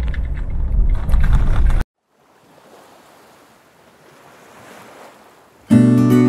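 Inside the cab of a Toyota Hilux driving on a rough, corrugated gravel track: a loud low road rumble with rattles and clicks, which cuts off abruptly under two seconds in. A faint soft hiss follows, then acoustic guitar music starts near the end.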